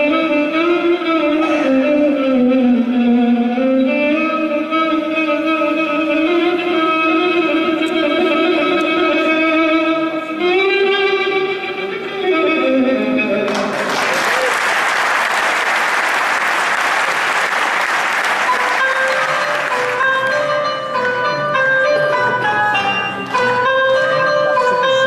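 A live classical Arabic orchestra led by violins plays a long, sliding melodic passage. About halfway through, the audience breaks into applause for several seconds. The orchestra then resumes with a new, more stepwise phrase.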